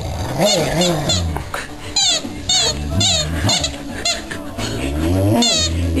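Boxer dog "talking": a string of whining, grumbling calls that rise and fall in pitch, one after another.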